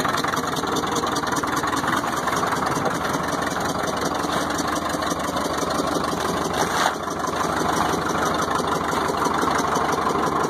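Caterpillar RD4 crawler bulldozer engine idling steadily, with one short click about seven seconds in.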